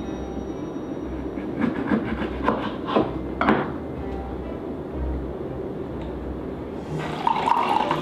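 Hand-operated citrus squeezer and a lemon being handled over a metal cocktail shaker: a few sharp knocks and clatters in the first half, then a denser squeezing and juice-dripping sound near the end. Soft background music with a steady low beat runs underneath.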